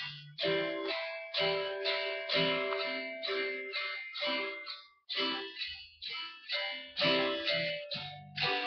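Telecaster-style electric guitar playing a practice exercise: phrases of separate picked notes with short breaks between them, and a brief full stop about five seconds in.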